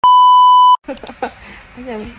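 A steady high-pitched beep of a television bars-and-tone test signal, the tone that goes with a colour-bar test pattern, lasting about three quarters of a second and cutting off sharply.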